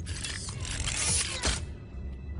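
Mechanical sound effect of alien machinery, a dense whirring and ratcheting with short pitch sweeps that cuts off suddenly about one and a half seconds in.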